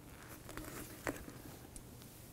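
Faint handling sounds as a metal-plated pneumatic positioner is moved about by hand: soft rustling with a few light clicks, the most distinct about a second in.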